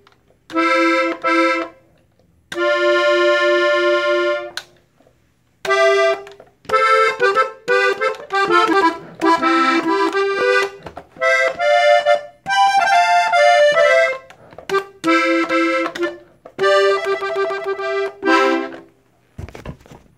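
Hohner Panther diatonic button accordion played on its treble buttons. It starts with a short phrase and a long held note, then moves into quicker melodic runs separated by brief pauses.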